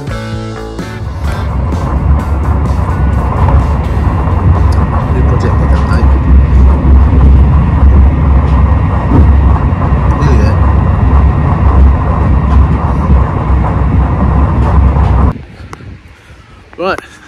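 Inside a moving passenger train carriage: loud, steady low rumble of the train running, which cuts off suddenly near the end. Music plays briefly at the start.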